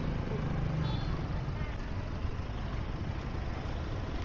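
Steady street traffic noise from a slow-moving jam of cars, pickups and motorbikes, with a low engine hum that stops about a second in.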